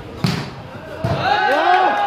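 A volleyball struck hard once, a sharp smack about a quarter second in. From about a second in, a crowd of spectators shouts, many voices overlapping.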